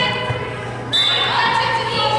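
Basketball game in a gymnasium: voices calling out across the hall, with a ball bouncing on the hardwood court and a steady low hum beneath. A sudden high-pitched sound cuts in about a second in.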